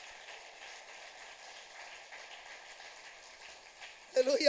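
Faint, steady hiss of background noise with no speech.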